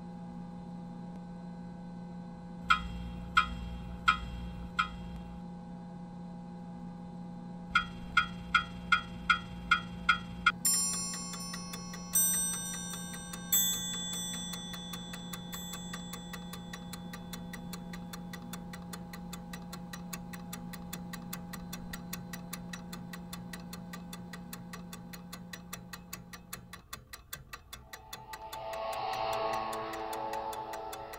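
Sound-design soundtrack over a steady low drone: ringing chime-like strikes, four slow ones and then a quicker run, give way to a fast, even clock-like ticking with a few ringing tones over it. Near the end the drone drops out and a swelling, wavering sound rises.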